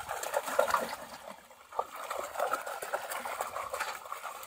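Shallow muddy water splashing and sloshing as bell-shaped woven bamboo plunge baskets are pushed down into it again and again, with a short lull about a second and a half in before the splashing picks up again.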